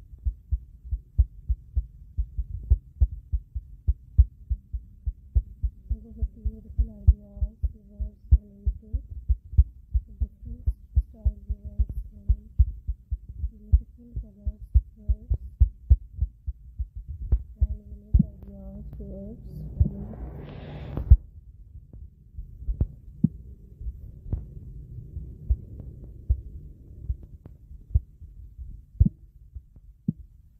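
Background music driven by a fast, steady deep thumping beat, with faint higher notes over it in the middle and a rising whoosh that cuts off about 21 seconds in.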